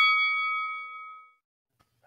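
A boxing ring bell sound effect ringing out and fading away over about a second, signalling the start of round one.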